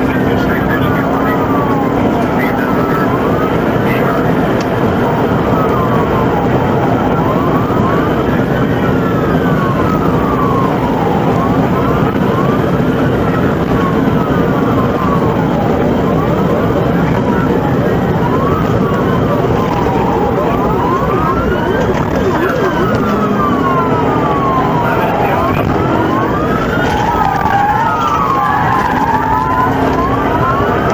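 Police car siren wailing, its pitch rising and falling about every two to three seconds, over the steady road and engine noise of a cruiser driving at speed in a pursuit.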